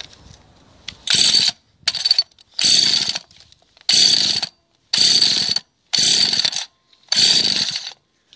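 Recoil pull-starter of a two-stroke petrol hedge cutter pulled about seven times, roughly once a second, each pull a short burst of whirring as the engine is spun over without catching.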